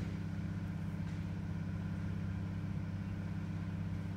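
A steady, even low hum made of several fixed tones, with no speech.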